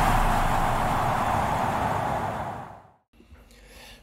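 The rushing, noisy tail of an intro sound effect, fading out over the first three seconds, followed by a moment of faint room noise.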